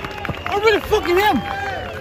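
Voices shouting and calling out in short, high-pitched bursts over general outdoor crowd noise.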